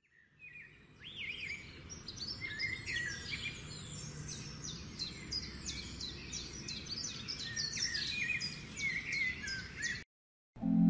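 Several small birds chirping and singing in quick, overlapping short calls, many of them quick downward sweeps, over a steady low background rumble; the sound fades in over the first second and stops suddenly at the end.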